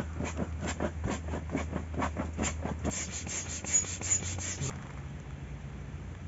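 Electric air pump inflating a flocked air mattress: a steady low hum with a quick, regular rubbing, about five strokes a second. About three-quarters of the way through the rubbing stops and the hum shifts slightly higher.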